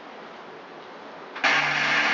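Steady background hiss of a live concert recording, then about a second and a half in the band comes in abruptly and much louder, with held notes.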